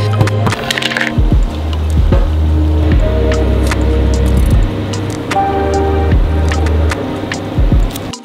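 Background music with a steady beat and sustained bass notes.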